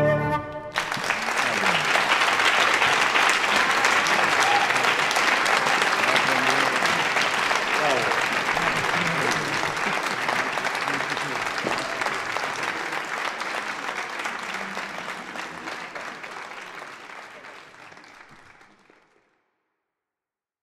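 The last chord of two flutes and piano stops under a second in, and an audience breaks into steady applause that gradually fades out over the last several seconds.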